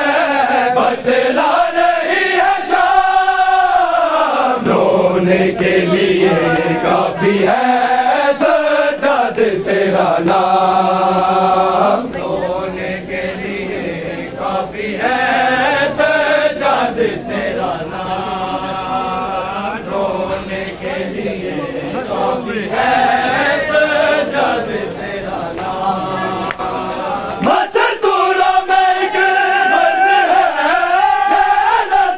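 A group of men chanting a Punjabi noha, a Shia mourning lament, in unison with no instruments, over scattered sharp slaps from matam chest-beating. The chant drops in level about twelve seconds in and swells again near the end.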